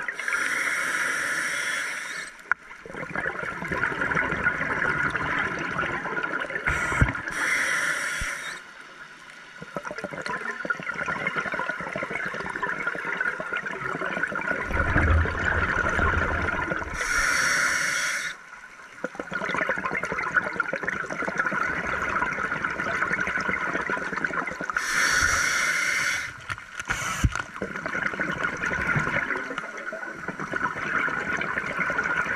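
A scuba diver breathing underwater through a Mares regulator: a short hiss on each of about four inhalations, spaced roughly eight seconds apart, with long stretches of bubbling and gurgling exhaust between them.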